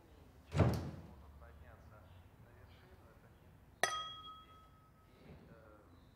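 A door shuts with a dull thud about half a second in. A little past halfway comes a single sharp glass clink that rings briefly.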